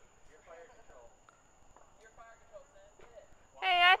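Faint voices talking in the background, then a loud shout near the end.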